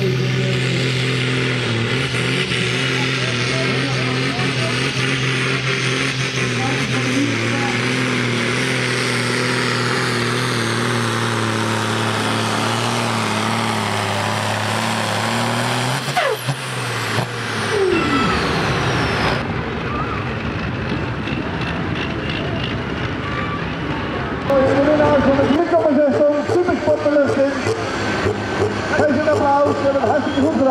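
International Harvester pulling tractor's engine running flat out under load as it drags a weight-transfer sled, a steady loud drone; about halfway through its pitch falls away as the engine backs off. People's voices in the last few seconds.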